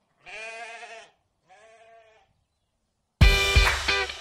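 Two bleats, the second shorter and fainter, then loud guitar music with hard beats starts near the end.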